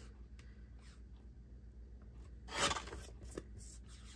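A sliding-blade paper trimmer cutting through a photo print: one short scraping swipe about two and a half seconds in, among faint clicks and paper handling.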